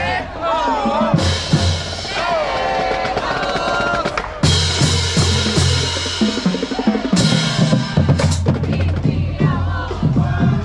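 Marching band playing on parade: saxophones and brass carry the tune over a steady bass-drum and snare beat, with cymbal crashes about a second in, midway and about seven seconds in.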